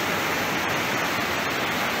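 Steady rush of a river in flood, its muddy water running fast and full.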